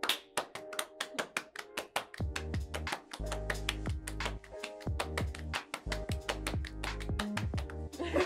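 Hand claps and palm-to-palm slaps from two people playing a partner clapping game, coming quickly and steadily, over background music with a beat whose bass comes in about two seconds in.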